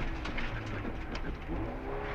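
2000 Subaru Impreza STi rally car's engine running under load on a gravel stage, heard from inside the cabin along with gravel and road noise; the engine note rises near the end as the car accelerates out of a corner.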